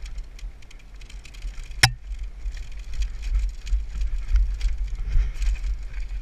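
Downhill mountain bike clattering and rattling over rough dirt and rocks, heard from a helmet camera with wind buffeting the microphone, and one sharp knock just under two seconds in.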